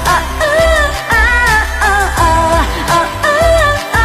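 A woman singing a Mandarin pop song with held, gliding notes into a microphone, over a backing track with a strong, steady bass beat.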